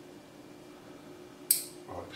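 A single sharp snip about one and a half seconds in: scissors or line cutters trimming the loose tag end of fishing line off a freshly tied blood knot.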